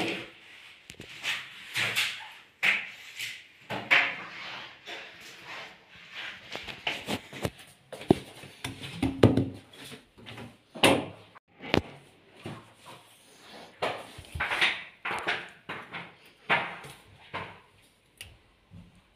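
Irregular knocks, bumps and rustles of handling, with a few sharp clicks, as the phone is moved over and behind a washing machine. There is no steady motor or water sound.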